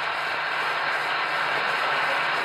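Steady hiss of an old broadcast recording, with no music or voice in it.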